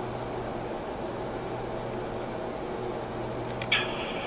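Steady hiss with a low hum in a pause between trunked-radio transmissions on a handheld scanner. Just before the end comes a short burst of narrow, radio-band audio as the next transmission starts.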